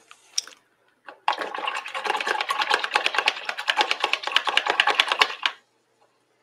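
A paintbrush swished briskly in a jar of rinse water, rattling against the container's sides in a fast run of clicks for about four seconds.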